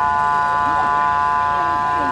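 A loud, steady turbine-engine whine from the crashed aircraft at the wreck site, several high tones held level without change, with the murmur of a crowd's voices underneath.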